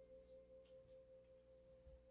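Very faint held musical tone: one steady pitch with a few quieter tones beneath it, sustained without change.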